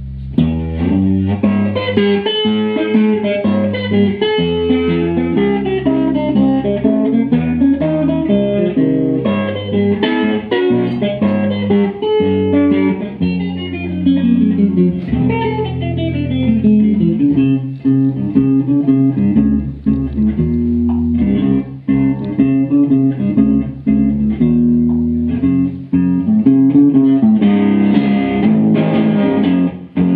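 Solo electric guitar played live through an amplifier: a busy instrumental passage of picked notes and running lines, with no singing. It grows denser and brighter near the end.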